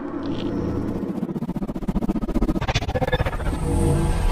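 Logo-intro sound effect: a low, rapidly pulsing build-up that grows steadily louder.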